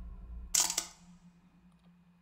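Trailer sound design of glass cracking: a low rumble fades away, then one short, sharp crack about half a second in.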